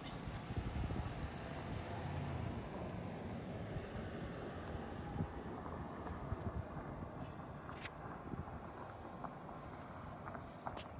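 Outdoor background noise: a steady low rumble with a few faint clicks scattered through it.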